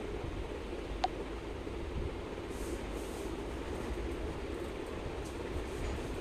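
Steady low rumbling background noise with no speech, and a single sharp click about a second in.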